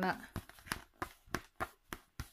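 Clear plastic cover film on a diamond painting canvas crinkling under fingers as the canvas is handled: a string of sharp crackles, about three or four a second.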